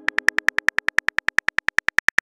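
Smartphone keyboard key clicks typing out a message: a rapid, even ticking of about ten clicks a second.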